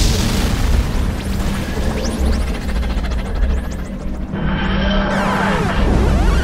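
Science-fiction sound design for the Master's time machine as it is set going: a deep rumbling boom with sweeping whooshes, mixed with music, and a new swirl of rising and falling tones about four seconds in.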